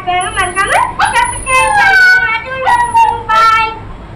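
A boy talking in a high child's voice, likely in Tamil, which the transcript did not capture.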